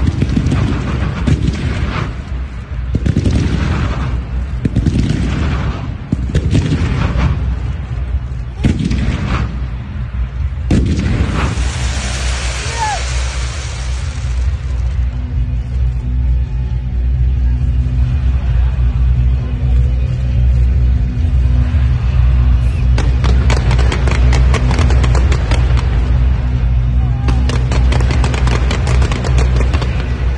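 Stadium fireworks going off in a rapid series of loud booms for the first ten seconds or so, followed by a few seconds of hissing. From about halfway, music with a heavy bass plays, and near the end dense crackling from more fireworks joins it.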